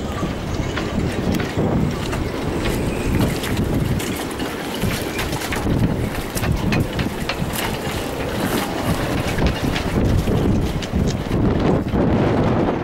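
Strong wind buffeting the microphone in a heavy, gusting rumble. Scattered light clicks and knocks run through it.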